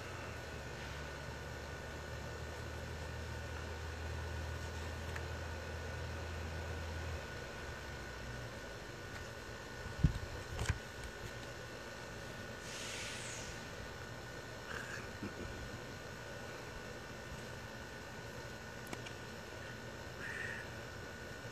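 Quiet outdoor room tone with a faint steady high whine and a low hum that stops about seven seconds in. About ten seconds in, two sharp knocks of something being handled on the table by the camera.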